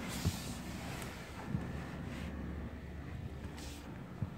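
Faint rustling and handling noise with a couple of soft knocks as a person climbs into a car's driver seat, over a low steady hum.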